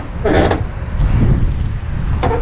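A man's short laugh, followed by a low, steady rumble.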